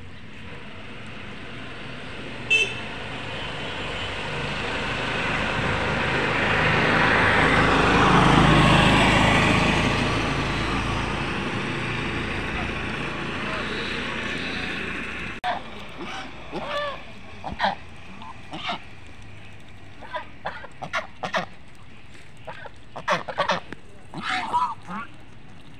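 A vehicle passes along the road, its noise rising and falling away over about ten seconds and loudest near the middle. From about two-thirds of the way in, domestic geese give many short honking calls.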